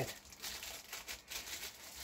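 White paper wrapping being handled and crinkled, a few short faint rustles.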